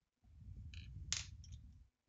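Colored pencils being handled on a desk as one is put down and another picked up: a dull rumble of handling noise with a short, sharp clatter about a second in.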